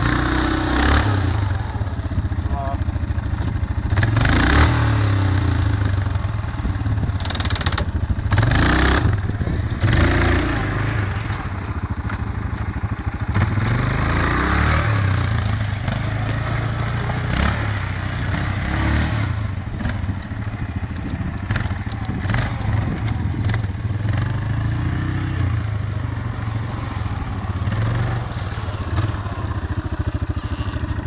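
ATV (quad bike) engine running off-road, its drone rising and falling with the throttle, with a few sharp knocks in the first ten seconds.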